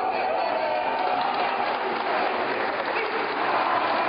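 Audience applauding after a ribbon-cutting, a steady clatter of clapping with voices mixed in.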